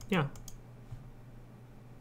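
A few light, sharp clicks from computer input while navigating a spreadsheet, over a faint steady room hum.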